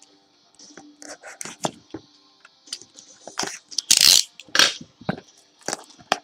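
Trading-card box packaging being opened by hand and the cards handled: irregular crinkles, crackles and small clicks, with a louder tearing crinkle about four seconds in.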